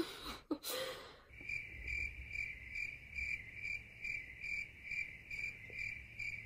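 A cricket chirping in a steady rhythm, about two high chirps a second, starting just over a second in.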